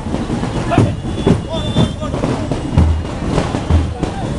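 A marching band's drums beating a steady rhythm, about two beats a second with deep bass-drum thumps, over a crowd's voices and shouting.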